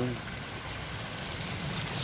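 Steady rush of water pouring from a PVC inflow pipe into a concrete fish pond.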